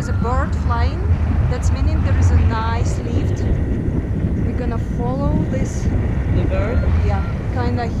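Airflow rumbling steadily on the camera microphone during a tandem paraglider flight, with voices talking over it.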